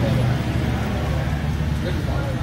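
Indistinct background voices over a steady low rumble.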